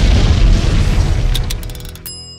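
Cartoon explosion sound effect: a loud, deep boom that fades steadily, with a few sharp crackles near the end.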